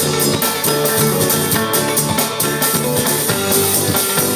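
Live band playing an instrumental passage: strummed banjo and acoustic guitar over a drum-kit beat, with a sousaphone bass line.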